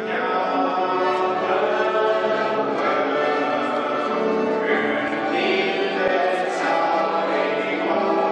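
Congregation and song leader singing a Romanian hymn together in D major, many voices in chorus at a steady, full level.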